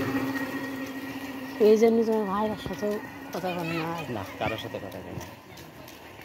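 People's voices speaking or calling out in two short stretches, loudest a little under two seconds in, over a steady low hum that fades away early.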